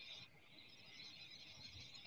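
Near silence, with only a faint hiss.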